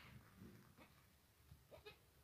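A goat kid bleating faintly: one short, high call near the end.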